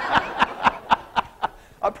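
A man chuckling: a run of quick, short laughs, about four or five a second, that grow fainter and fade out after about a second and a half. He starts to speak again near the end.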